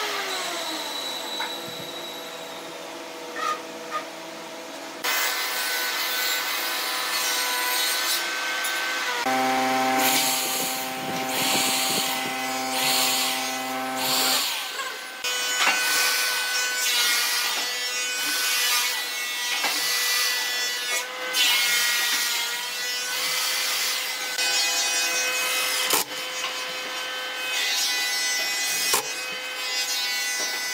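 Cordless drill boring holes into a wooden chair frame, running in repeated bursts from a few seconds in.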